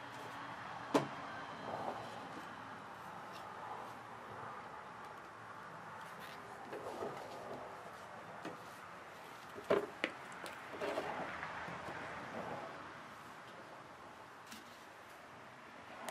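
Handling noise: a sharp click about a second in, a pair of sharp clicks around ten seconds, and softer scattered knocks and rustles over a faint steady hiss.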